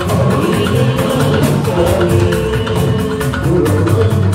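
A live Fuji band playing, with the drum kit and hand percussion keeping a dense, driving beat under a held melodic line.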